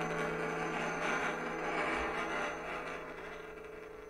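The tail of a short keyboard jingle: a held chord with a wash of reverberation, fading away steadily.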